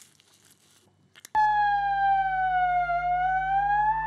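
Faint wet squishing and crinkling as a spoon is worked into a soft fruit to fake an eye being plucked out, then, from about a second and a half in, a man imitating an ambulance siren with his voice: one loud long tone that sags slowly in pitch and rises again.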